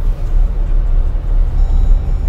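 A car driving slowly along a dirt road, heard from inside the cabin: a steady low rumble from the engine and the tyres.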